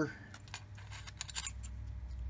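Light metallic clinks of a steel transmission gear and washer being slid off the mainshaft and set down on the bench, with a small cluster of clinks about a second in, over a steady low hum.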